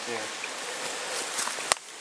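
Small sandy-bottomed woodland stream flowing, a steady rushing hiss of running water. A single sharp click sounds near the end.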